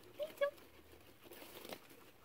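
Guinea pig pulling hay from a hay rack and chewing it: dry hay rustling and crackling, building in the second half.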